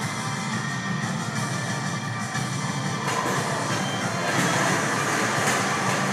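Music from a television news programme playing in a room between news reports, getting a little louder about four seconds in.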